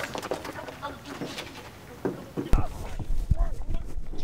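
Two men scuffling in a staged fight, with wordless shouts and strained vocal sounds. About two and a half seconds in there is a sharp loud thump, followed by several duller thuds.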